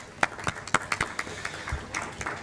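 Scattered hand clapping from a few people, a train of sharp claps about four a second.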